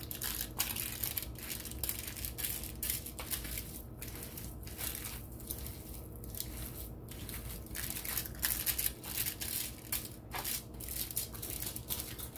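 Hands kneading raw ground beef mixed with chopped onion, bell pepper and crumbled wheat crackers: an uneven, continuous mushing with no clear rhythm.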